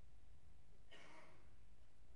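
A man's single short breath, heard faintly through a pulpit microphone about a second in, over a steady low room hum.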